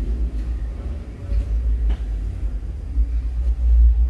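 A low rumbling noise that swells and fades unevenly, strongest about a second in and again near the end.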